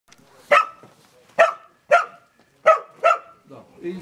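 A dog barking five times in quick, sharp, loud barks, then stopping.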